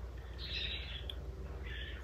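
Faint chirping from a pet bird: two short calls, the first about half a second in and the second near the end, over a low steady hum.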